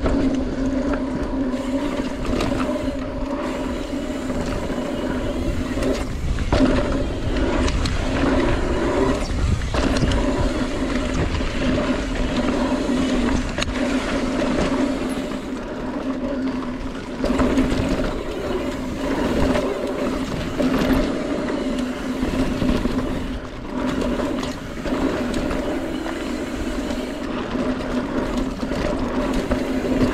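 Mountain bike rolling along dirt singletrack. Tyre and trail rumble mixes with wind buffeting the on-bike camera's microphone, under a steady buzzing hum that drops out briefly a few times.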